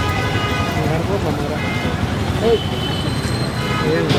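Road traffic rumbling steadily, with vehicle horns honking three times: at the start, briefly near the middle, and again for about a second near the end. Indistinct chatter runs underneath.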